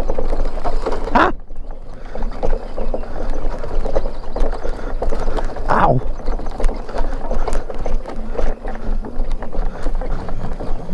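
An off-road mini bike bouncing along an overgrown trail, with a continuous jumble of rattles, knocks and grass brushing against the bike. Two brief, louder sweeping sounds come about a second in and just before the middle.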